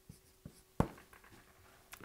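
Felt-tip marker writing on a whiteboard: a few short taps and strokes, the sharpest just under a second in, over a faint steady hum.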